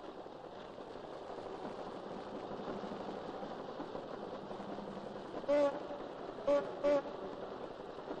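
Veteran motorcars running steadily in a crowd, with a car horn tooting three times a little past halfway: one slightly longer toot, then two short ones close together.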